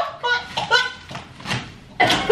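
Short wordless vocal sounds, groans and laughs, from people trapped under duct-taped bedcovers, with a couple of brief movement noises in the second half.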